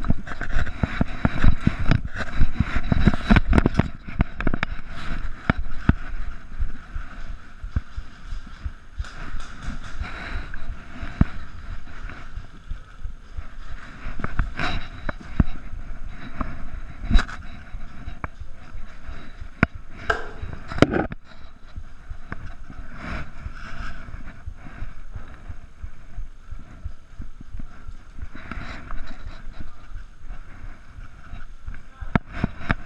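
Footsteps and the rustle and knock of combat kit against a chest-mounted camera as a player moves, with scattered clicks and knocks throughout. The handling noise is loudest and busiest in the first few seconds, with a couple of sharper knocks about two-thirds of the way through.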